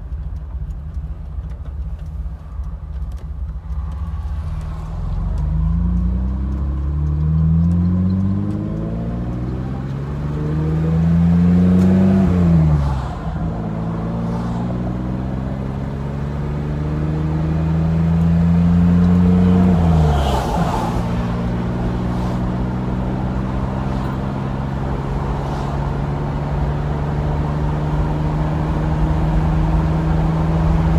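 Car engine heard from inside the cabin, accelerating up through the gears: its pitch climbs and drops sharply twice as it shifts up, then holds steady at cruising speed. Wind and road rumble come in through the open window.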